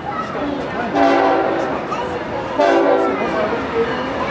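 Diesel freight locomotive's air horn sounding two blasts, a chord of several tones, the first about a second in and the second, shorter, past halfway, over the train's steady rumble.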